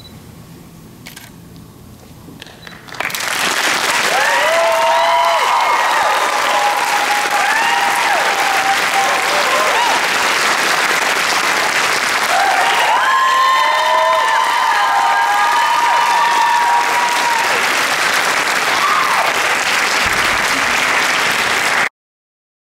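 Audience applause starting suddenly about three seconds in and running loud and steady, with whoops and shouts from the crowd rising over it twice; it cuts off abruptly at the very end.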